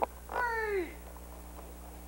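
A young voice crying out once, a short wail that falls in pitch, lasting about half a second, a moment in.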